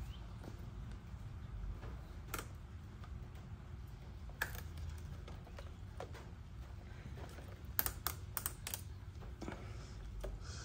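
Faint, scattered clicks of hands working plastic parts as an adhesive LED light strip is pressed into place along a Can-Am Ryker's headlight housing, with a quick run of four or five clicks near the end. A low steady hum of the room lies underneath.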